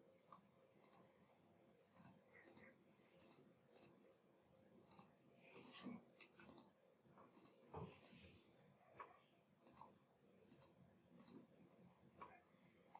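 Faint computer mouse clicks, irregularly spaced, a dozen or so, as tools and points are picked on screen.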